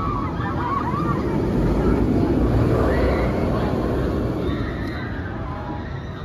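Banshee inverted steel roller coaster train running along the track overhead, getting louder about two seconds in and fading toward the end, with riders screaming.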